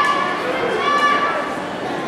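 A high-pitched voice calling out twice in a large, echoing hall, each call held for about half a second.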